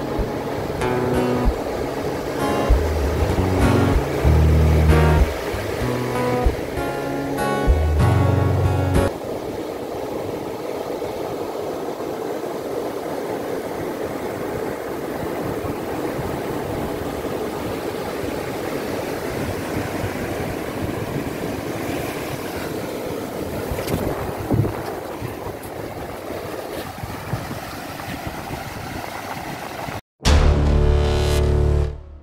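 Acoustic guitar music plays for about the first nine seconds, then stops. What remains is the steady wash of ocean surf breaking and running up a sandy beach, with a few slightly louder swells.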